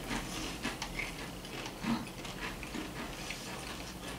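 Pringles Loud potato crisps being chewed: irregular small crunching clicks.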